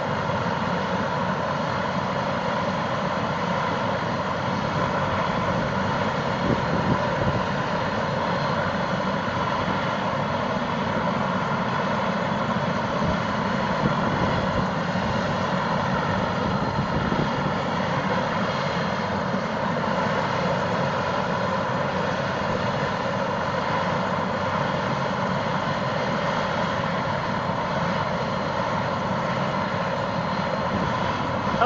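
Light turbine helicopter running on the ground with its main rotor turning: a steady engine whine over rotor noise, unchanging throughout.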